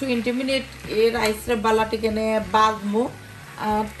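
A woman speaking in short phrases with brief pauses.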